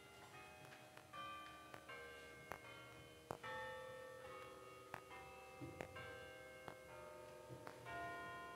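Quiet organ music: sustained held chords that shift every second or so, with faint sharp clicks scattered through.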